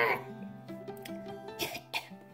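Quiet background music with held, steady notes. About one and a half seconds in comes a short, breathy, cough-like sound from the woman.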